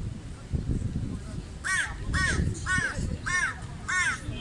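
A bird calling five times in a quick, even series, about two short calls a second, starting a little before halfway.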